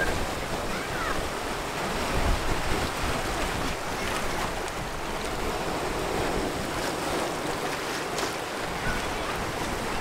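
Ocean surf washing steadily over a rocky reef shoreline, with wind on the microphone.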